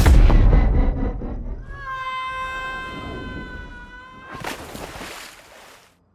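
A loud rushing sound with a deep rumble, then a cartoon dog's long, steady, high-pitched howl held for nearly three seconds, then another brief rush before the sound dies away.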